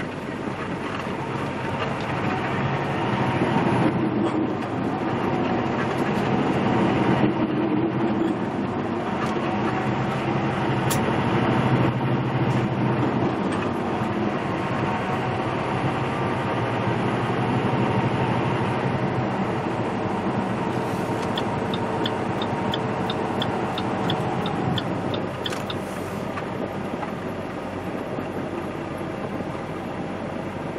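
Semi truck's diesel engine heard from inside the cab, pulling through an intersection and picking up speed, with short breaks in the sound as it changes gear, then running steadily at cruise with road noise. Near the end a run of light, regular ticks, about two a second, lasts a few seconds.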